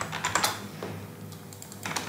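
Computer keyboard typing: a quick run of keystrokes in the first half-second, then a single key press a little later.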